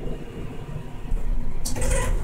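Low steady rumble inside a Schindler 330A hydraulic elevator cab. Near the end, a louder hiss and rumble come in as the doors begin to slide open.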